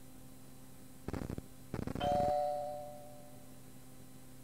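The tape's cueing chime: a single bell-like ding about two seconds in that fades over about a second, over steady tape hiss. It signals that the next outgoing message starts in three seconds. Just before it come two short bursts of crackly noise.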